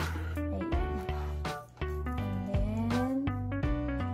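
Upbeat instrumental background music: a stepping bass line under gliding melodic notes and a regular beat, with a brief drop in loudness a little past halfway.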